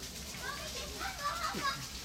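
Background voices of people talking over one another, children's voices among them.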